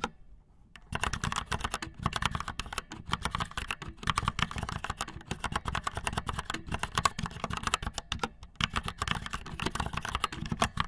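Fast typing on a mechanical keyboard with red linear switches: a dense run of rapid keystroke clacks, after a short pause in the first second.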